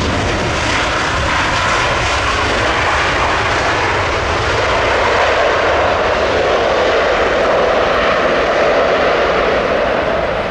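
Jet engines of an Air Canada Boeing 737 MAX 8 running loud as the airliner rolls along the runway just after landing. The noise is steady and grows a little louder in the second half.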